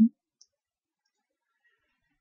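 Near silence after the last syllable of a spoken word ends right at the start, with a very faint click about half a second in.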